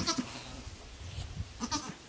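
A goat bleating twice: a short call at the start and another about a second and a half later.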